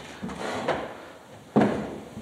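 Sharp knocks or thumps, each with a fading tail. There are softer taps and creaks about half a second in and a loud knock about one and a half seconds in.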